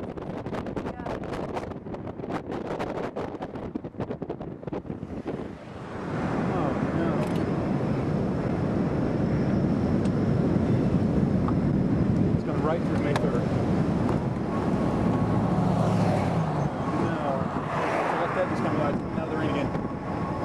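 Wind buffeting the microphone in crackling gusts. About six seconds in, a louder steady rush of wind and road noise from a vehicle driving along takes over.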